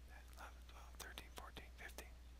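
A man whispering, counting quietly under his breath at a steady pace.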